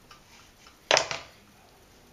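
A single sharp knock of a kitchen knife against the work surface about a second in, dying away quickly, with faint room tone around it.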